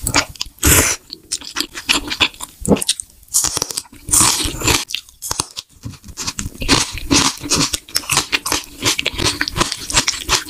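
Close-up eating sounds of a person chewing green onion kimchi and black bean noodles: many short, sharp crunches and wet mouth noises in quick, irregular succession.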